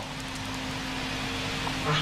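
Steady hiss with a low, even electrical hum: the background noise of an old archival film recording in a pause between a man's words.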